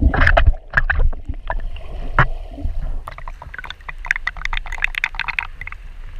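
Water splashing and sloshing in quick, irregular bursts over a steady low rumble.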